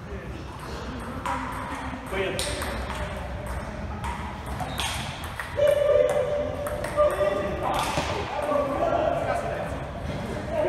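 Table tennis ball clicking off paddles and the table in an irregular knock-up, with voices talking in a large hall.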